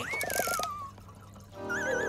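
Cartoon sound effects: a whistle-like tone jumps up and slides down over about a second. Near the end a wobbling tone begins to slide downward.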